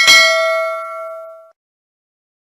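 Notification-bell sound effect of a subscribe-button animation: a single bright bell ding that rings and fades, then cuts off sharply about a second and a half in.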